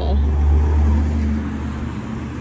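A loud, deep rumble that swells through the first second and a half and then eases off.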